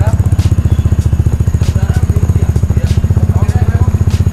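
Vespa Primavera scooter's single-cylinder engine idling steadily through its exhaust, a fast, even low pulse.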